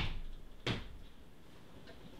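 Two short knocks, the second about two-thirds of a second after the first, followed by a few faint ticks.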